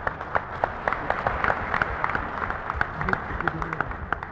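An audience applauding, with many irregular hand claps, heard on an old television recording. A man's voice comes in briefly about three seconds in.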